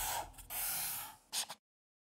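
Short breathy hissing noises, like whooshes: one fading just after the start, a second about half a second in, and a brief third near 1.4 s. The sound then cuts to dead silence.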